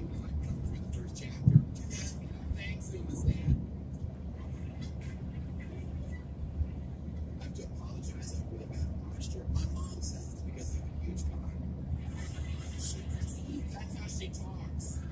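Car cabin road noise at highway speed: a steady low rumble of tyres and engine, with a couple of short knocks about a second and a half in and again a second or so later.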